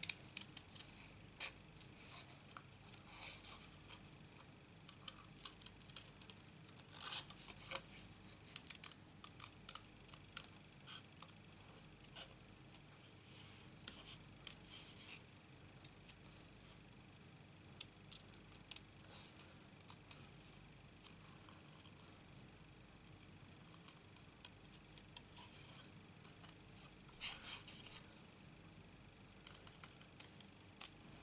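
Small scissors snipping through cardstock in short, quiet cuts, working closely around a stamped word. The snips come irregularly, with a few louder ones about seven seconds in and again near the end.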